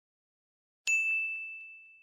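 A single bright chime struck once about a second in, ringing on one high tone and fading slowly: the sound effect of an animated logo intro.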